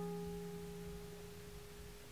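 Acoustic guitar chord left ringing, its few sustained notes slowly fading away.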